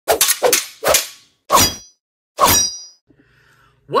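Intro sound effect of sharp metallic clangs: a quick cluster of strikes at the start, then single strikes spaced further apart, the last two ringing briefly.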